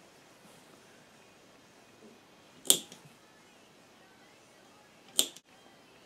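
Two sharp clicks, about two and a half seconds apart, from a metal hand tool being pushed through a leather flap to make stitch holes, over quiet room tone.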